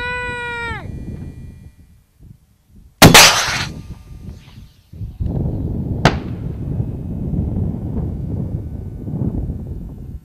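RPG-7 rocket-propelled grenade launcher firing: a single loud blast about three seconds in that trails off over about a second. About three seconds later a sharp crack, the grenade striking the distant target, over steady noise.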